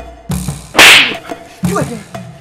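Dramatic film score with a regular drum and wood-block beat, cut about a second in by a loud, sharp whip-like swish sound effect.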